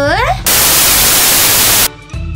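A loud burst of white-noise static about a second and a half long, starting about half a second in and cutting off suddenly near the end.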